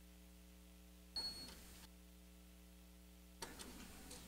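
Near silence with a steady low electrical hum on the broadcast audio feed. About a second in, a brief click with a short high beep; near the end, another click followed by faint hiss.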